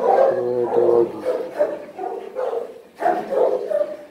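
A dog making a run of low, pitched vocal sounds while being stroked, several short ones one after another, the loudest at the start.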